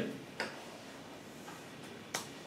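A single computer click about half a second in, with a fainter click near the end, over quiet room tone.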